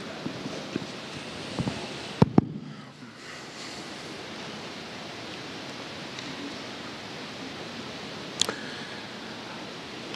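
Steady hiss of a large auditorium's room tone, with two sharp knocks a little after two seconds in and a single click about eight and a half seconds in.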